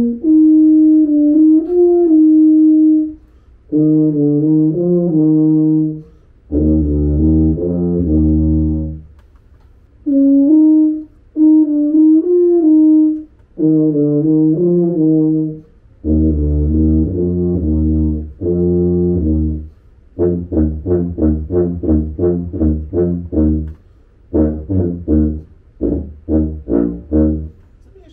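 Solo tuba playing short passages in phrases with brief pauses, played twice: a held note rising to a higher one, a stepwise run, then quick low notes. The second time through ends with a long string of short detached notes. The passages are played on two different tubas in turn, a lacquered brass one first and a silver one after.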